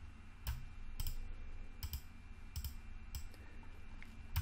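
Scattered clicks of a computer mouse and keyboard, about seven sharp clicks at irregular intervals, over a steady low hum.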